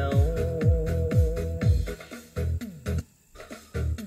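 Vietnamese pop song with an electronic drum beat, about two kick-drum hits a second under a melody, played through a Sansui SG2-15 trolley karaoke speaker. About three seconds in the music drops away almost to nothing, then comes back just before the end.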